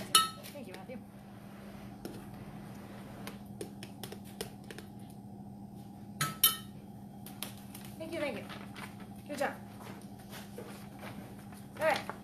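Metal spoons scraping and tapping against a glass measuring cup and glass baking dish as cooked butternut squash is scooped from its skin. Two sharp ringing clinks stand out, one just after the start and one about six seconds in, among lighter taps.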